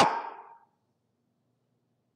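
The end of a man's loud, preached phrase dying away in the room's echo over about half a second, then a pause with only faint room hum.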